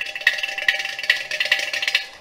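Carnatic hand percussion: crisp, ringing strokes in a dense, rapid run with low thuds beneath, between passages of evenly spaced strokes about three a second.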